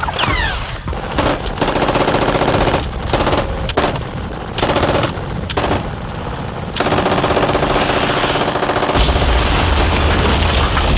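Rapid machine-gun fire in long bursts broken by short pauses, then firing without a break from about seven seconds in. A deep rumble joins near the end.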